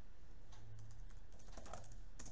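Computer keyboard typing: a run of light key clicks at an uneven pace, over a faint low steady hum.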